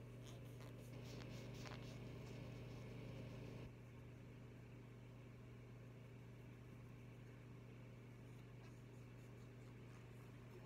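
Faint rubbing and scratching of an alcohol wipe scrubbed over a medication vial's rubber top, stopping a little under four seconds in, over a steady low hum.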